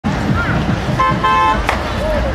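A vehicle horn beeps twice in quick succession about a second in, over the continuous babble of a dense street crowd; a sharp click follows just after.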